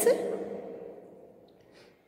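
A woman's voice trailing off and fading out over the first second. Then it is nearly quiet, with a faint brief scratch of a pen writing on a paper page near the end.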